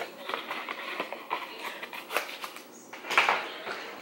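Rummaging through makeup products: scattered small clicks and light rustling of containers being moved, with a brief louder sound about three seconds in.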